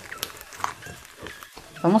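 Black glue slime being kneaded and squeezed by hand with foam clay worked into it, giving soft, wet squelches and small crackles.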